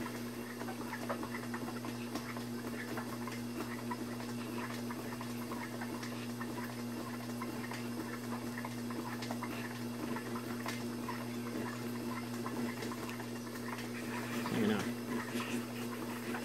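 Wet clay squelching and slurping softly under the fingers as the potter compresses the inside of a spinning cake platter on a pottery wheel, over a steady low electric hum.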